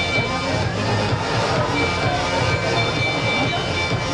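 A track-race lap bell rings for the final lap, in two spells of steady high ringing, the second from about halfway in. It sounds over stadium crowd noise and indistinct voices.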